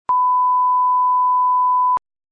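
Steady electronic test tone: one pure, unchanging beep lasting nearly two seconds, switching on and off abruptly with a click at each end.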